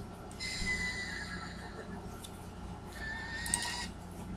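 Faint horse whinnies from the opening of a music recording played back through computer speakers: one call about half a second in with a slightly falling pitch, and another near the end.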